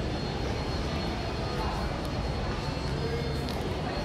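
Steady indoor mall ambience: an even low rumble and hiss, with faint background music and distant voices mixed in.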